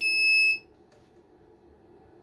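One high-pitched electronic buzzer beep, about half a second long, as the inverter circuit is powered up.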